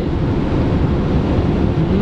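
Steady low rumble of a van's engine and tyres, heard from inside the cab at motorway speed.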